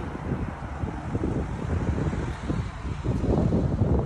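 Wind buffeting the microphone: an uneven low rumble that comes and goes in gusts, louder near the end.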